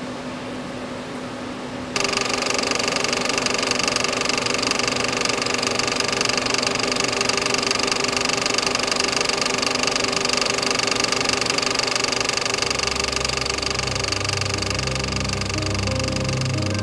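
Film projector running with a steady mechanical whir that suddenly grows louder about two seconds in. Low musical notes start underneath near the end.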